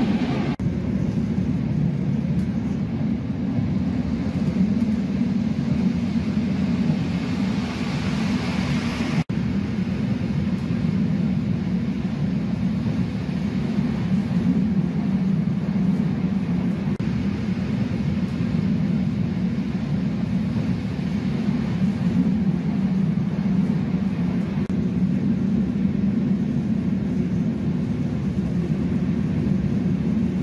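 Steady low rumble of a moving passenger train, heard from inside the carriage. It is hissier for the first nine seconds or so, while in a tunnel, then breaks off sharply for an instant and goes on as a steady rumble.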